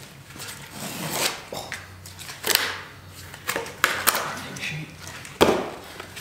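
Handling noise from curved wooden laminations and cellophane film: a run of irregular scrapes and crinkles, with a sharper knock-like scrape near the end.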